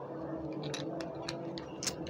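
A handful of light, irregular clicks and ticks from a ring light's plastic phone-holder mount being turned and screwed tight by hand, the loudest click near the end.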